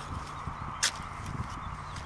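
Paper and a small plastic bag rustling in the hands, with one short sharp crinkle a little under a second in, over steady outdoor background noise with a low rumble.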